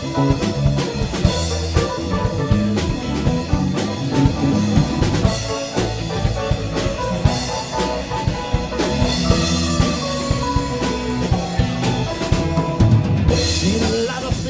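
Live rock band playing an instrumental passage without vocals, heard through the drummer's monitor mix, so the drum kit is loud and upfront over guitars and keyboard, keeping a steady beat.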